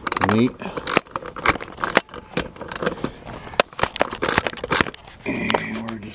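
Irregular sharp clicks, taps and scrapes of metal from hands and a tool working a security light fixture's mounting hardware.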